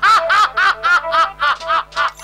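An actor laughing into a microphone, heard over the stage loudspeakers: a loud, rhythmic staged laugh of about nine short 'ha' syllables in quick succession, each rising and falling in pitch.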